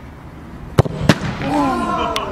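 A football kicked hard with a sharp thump, then a second sharp impact about a third of a second later as the shot reaches the robot goalkeeper's goal. Several voices shout in reaction right after.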